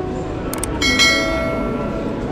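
Two quick clicks followed by a bright bell chime that rings on and fades away, the sound effect of an animated subscribe button, laid over steady background noise.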